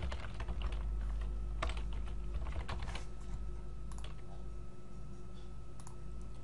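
Keystrokes on a computer keyboard: a quick run of typing over the first three seconds, then a few single clicks, over a steady low hum.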